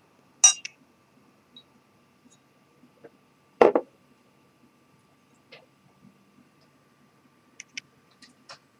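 Glassware sounds while water is added to a whisky: a small glass water pourer clinks against the nosing glass about half a second in. About three and a half seconds in, a glass is set down on the desk with a knock, the loudest sound. A few faint clicks follow near the end.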